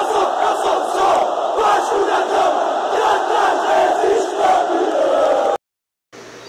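Football supporters' crowd in a packed stadium chanting together, many voices loud and steady; it cuts off suddenly near the end.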